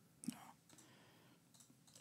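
Near silence, broken by one short click about a quarter of a second in.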